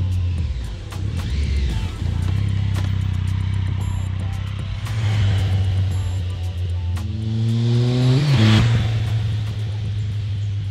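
A motorcycle engine accelerating, rising in pitch to its loudest about eight and a half seconds in as it passes close by, over background music.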